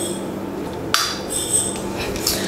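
A sharp metallic clink of steel kitchenware about a second in, ringing briefly at several high pitches, over a steady low hum.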